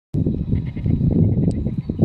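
Great cormorants at the nest giving deep, guttural croaking calls: a rough, rapidly pulsing run of low notes.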